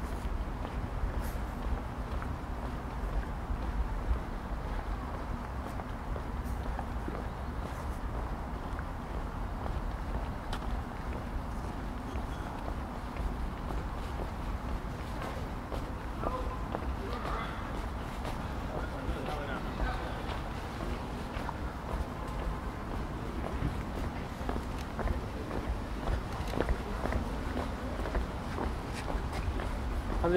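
Outdoor pedestrian-area ambience over a steady low rumble: the murmur of people talking around, with a few voices standing out from about sixteen seconds in, and footsteps on pavement.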